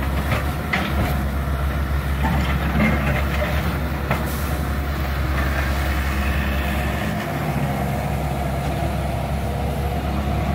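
A Cat 305.5E mini excavator's diesel engine running steadily as the machine works, with a few short clanks and knocks from the bucket and debris in the first few seconds.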